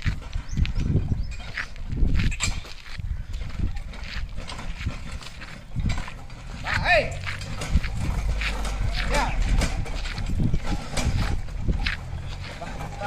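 A pair of oxen pulling a loaded bullock cart on a dirt track: irregular hoof steps and the cart's knocking and rattling, with a man's short calls to the bullocks around the middle.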